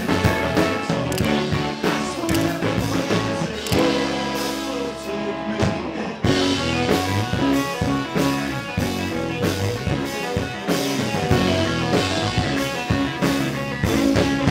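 Indie rock music: electric guitars over a drum kit. The drums drop back a few seconds in and come crashing back in around the middle.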